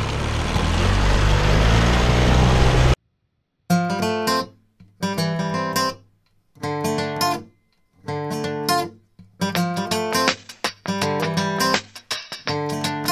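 Dinghy outboard motor running, its pitch rising slightly over a rush of wind and water; it cuts off abruptly about three seconds in. Strummed acoustic guitar music follows, chords in short phrases with brief gaps between them.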